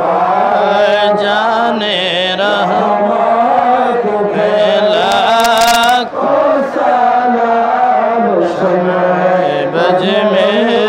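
Islamic devotional chant led by a man's voice over a public-address system, a continuous wavering melody with other men's voices holding a low note beneath it.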